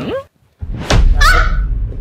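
A sudden dramatic hit with a low rumble running on under it, and a short high-pitched startled cry from a woman about a second in.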